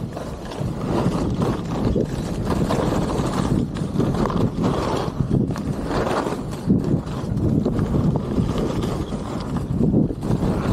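Skis sliding and scraping over groomed snow at speed, the noise swelling and easing unevenly through the turns, mixed with wind buffeting the microphone.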